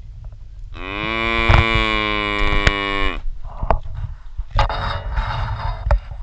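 A zebu cow mooing at close range: one long moo of about two and a half seconds, steady in pitch and dropping off at the end. About a second and a half later comes a shorter, rougher, breathier sound.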